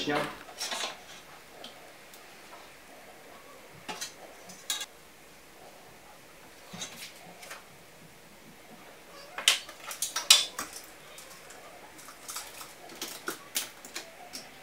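Scattered sharp clicks and light knocks of hand tools being handled while measuring and marking up a cabinet wall, with a loud cluster of clacks about two thirds of the way through.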